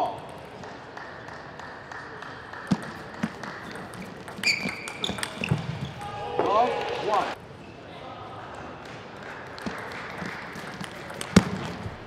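Table tennis ball knocks, a few scattered sharp taps on table and bats, the loudest near the end as a rally gets going. Voices shout for a few seconds around the middle.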